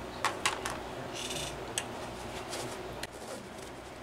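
Several light clicks and a brief scrape as small metal engine parts and tools are handled, over a low steady room hum.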